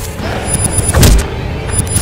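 Trailer sound design: a loud low rumbling music bed with a heavy boom about halfway through, and thin high tones flickering over it.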